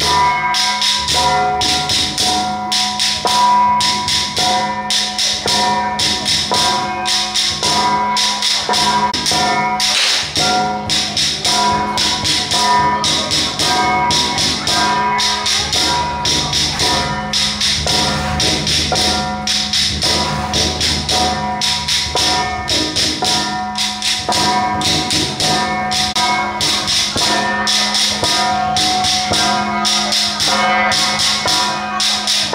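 Penghu xiaofa ritual music: drum and small cymbals beaten in a fast, even rhythm of about four strokes a second, with a melodic line over it.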